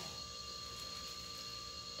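Quiet room tone: a faint steady background hum with thin, unchanging high tones and no distinct handling noises.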